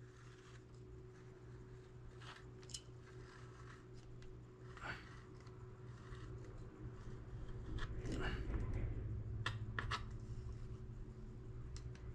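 Faint scrapes and light clicks of a knife blade drawn along a steel straightedge, cutting a strip of rolled plasticine clay, over a steady low hum.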